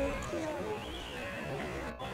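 Indistinct voices of people talking in the background, with a steady low rumble of outdoor noise.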